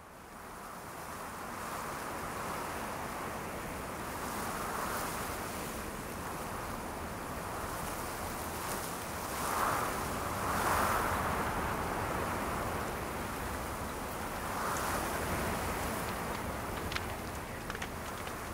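Wind blowing in gusts, fading in from silence at the start and swelling loudest about ten seconds in.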